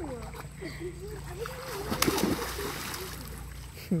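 Someone jumps into a swimming pool with a single splash about halfway through, the water churning for about a second after. Before it comes a high, wavering voice.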